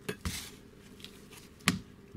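Metal clutch assembly being handled on the bench: a light clink at the start and a short scrape, then a sharp metallic clack near the end.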